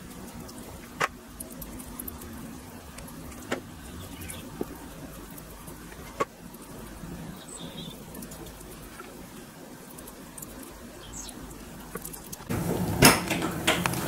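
Light clicks of a basting brush tapping against a metal grill rack as chicken legs are basted, four in all, over a faint steady hum. Near the end, louder metal clattering as the oven door is opened.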